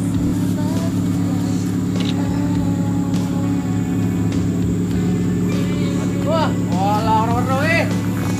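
A motor vehicle engine idling steadily, with people's voices briefly near the end.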